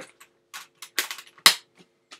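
A guitar slide falling off and clattering: a few separate knocks, the loudest about one and a half seconds in.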